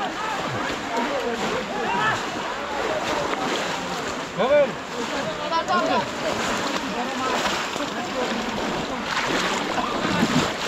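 Several voices calling and chattering over a steady wash of splashing from people wading in shallow muddy water. One voice shouts loudly about halfway through.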